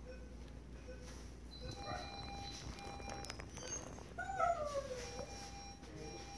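An animal's drawn-out cry, one call falling in pitch about four seconds in, with fainter short calls and thin steady tones around it.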